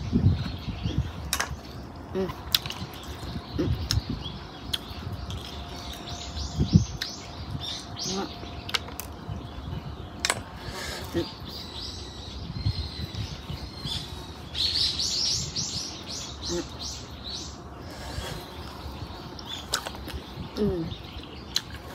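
Small birds chirping in quick runs of short high notes, with the densest run about fifteen seconds in. Scattered sharp clicks of snail shells being handled and picked at over a ceramic bowl come through now and then.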